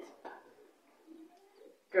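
A bird calling faintly in the background, a few short low calls. A man's spoken word begins at the very end.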